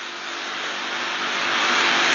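A steady rushing noise with no clear pitch, swelling gradually louder over the two seconds.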